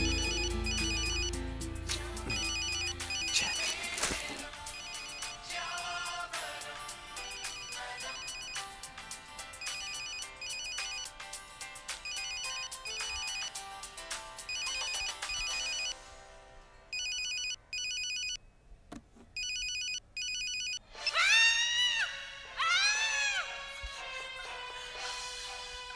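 A telephone ringing with a double electronic trill, pairs of rings repeating about every two seconds, over background music. The music fades out about two-thirds of the way through, leaving the rings alone, and two loud swooping tones that rise and fall come in near the end.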